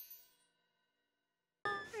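The last ringing chime of a cartoon's musical logo sting fading out within about a third of a second, followed by dead silence. A voice starts near the end.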